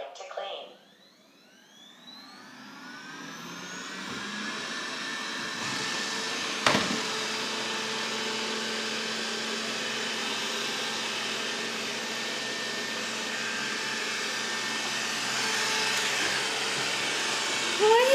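Robot vacuum starting up: its fan spins up with a rising whine over the first few seconds, then runs with a steady hum. There is a single sharp click about seven seconds in.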